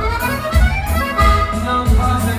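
Accordion melody played live on an Elkavox electronic button accordion over a steady bass beat, the melody climbing in a quick run near the start.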